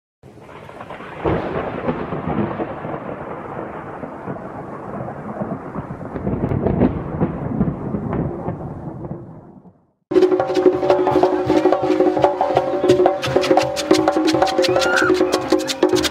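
A thunder sound effect: a loud crack about a second in, then rumbling that slowly fades away. About ten seconds in it cuts to a brass band playing, steady brass chords over sharp, fast percussion.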